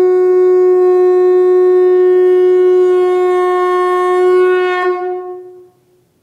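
A conch shell (shankha) blown in one long, loud, steady note that wavers and fades out near the end.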